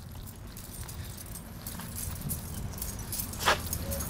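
A ring of keys clipped to a belt jangling with each walking step, light metallic jingles that grow busier in the second half, with one sharper clink about three and a half seconds in.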